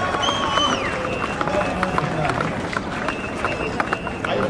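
A rally crowd outdoors with a voice over loudspeakers, deliberately distorted so the words cannot be made out. It comes through as warbling whistle-like tones in the first second and crackling clicks over the crowd noise.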